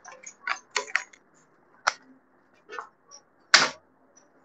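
Handled pieces clicking and knocking, about six short, irregular strikes. The loudest comes near the end, as painted wooden cutouts are set down on the paper-covered work table.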